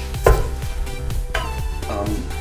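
A few sharp knocks of a brass trumpet being handled and knocked against hard surfaces, the loudest just after the start and another past the middle, over steady background music.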